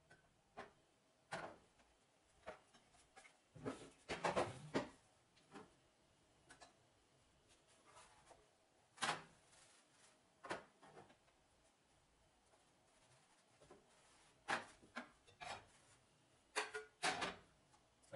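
Irregular clinks and knocks of cooking utensils, a spatula against a frying pan and plate as pancakes are flipped and moved, with quiet gaps between; the busiest clatter comes about four seconds in.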